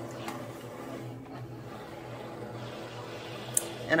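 A steady low hum, with a single sharp click near the end.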